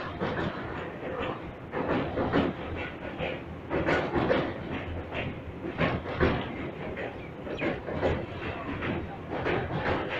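Express passenger train running at speed, its coach wheels clattering over rail joints in an uneven clickety-clack over a steady rumble, heard from an open coach door.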